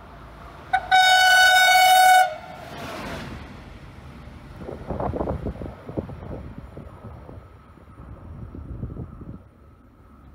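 Train horn: a brief toot, then one long blast about a second in. The train then passes with a rush and the clatter of its wheels over the rails, fading near the end.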